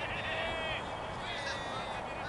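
Distant people's voices calling out: a drawn-out call in the first second and a shorter one about a second and a half in.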